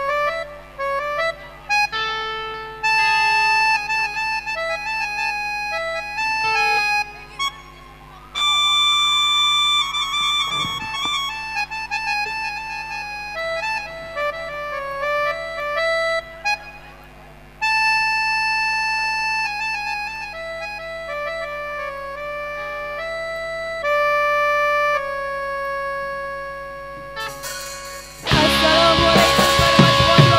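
Yamaha electronic keyboard playing a slow solo lead melody, held notes in short phrases with brief pauses between them.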